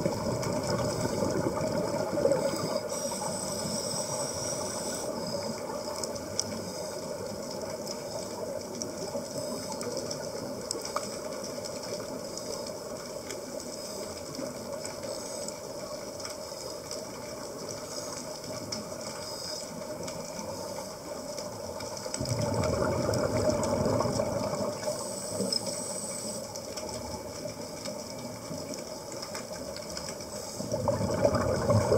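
Underwater hiss and rushing noise, with louder bursts of scuba exhaust bubbles at the start and again about two-thirds of the way through.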